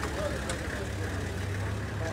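Vehicle engine idling steadily, a low hum, with faint voices of people around it.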